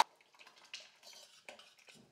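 Faint splashing and dripping as ground sago paste is poured from a steel container into water in a steel pot, with a few light metal clinks.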